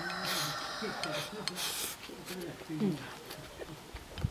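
Someone eating from a bowl with chopsticks, with short bursts of eating noise near the start and again about a second and a half in. Low vocal sounds run beneath and stop about three seconds in.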